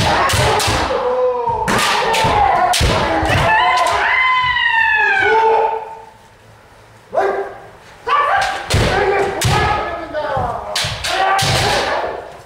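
Kendo sparring: bamboo shinai striking armour and feet stamping on the wooden dojo floor, mixed with several players' drawn-out kiai shouts, one long falling shout about four seconds in. The hits and shouts come in clusters, with a short lull about six seconds in.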